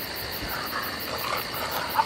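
Crickets chirping steadily in the background, a rapid high pulsing trill about six times a second.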